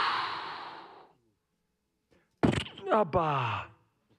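A preacher's forceful breathy blow into the microphone, a rush of breath that fades away over about a second, used as a prayer exclamation over people being prayed for. About halfway through come two short voiced exclamations, each starting with a sharp pop and falling in pitch.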